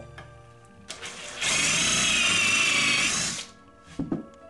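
Cordless drill with a countersink bit boring a pilot hole into pine: the motor whines steadily under load for about two seconds, starting a little over a second in, then stops.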